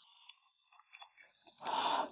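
Close-miked eating sounds from a mouthful of grilled oyster: a few soft wet clicks of chewing, then a loud breathy rush near the end as she breathes out through an open, full mouth.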